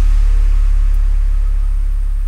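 Chillstep electronic music with the beat dropped out, leaving a lone deep sub-bass synth note held and slowly fading.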